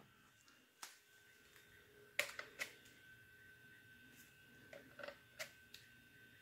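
Near silence: room tone with a faint steady high whine and a few faint, short clicks and taps, one about a second in, three in quick succession about two seconds in, and a handful more about five seconds in.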